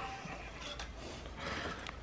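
Quiet room tone with two faint light clicks, one a little under a second in and one near the end, from a hole saw on its arbor being turned over in the hands.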